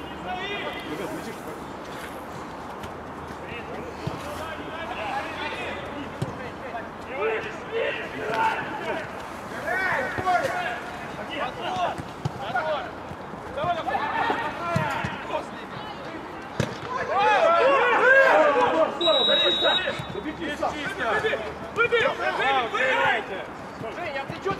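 Footballers' voices shouting and calling across an outdoor pitch, with a few dull thuds of the ball being kicked. A short, steady high tone sounds once, about a second long, late on.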